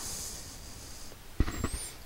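A man's breath close to the microphone in a pause between sentences: a soft hiss that fades over the first second. About one and a half seconds in comes a sharp click, then a brief high whistle that rises and falls just before he speaks again.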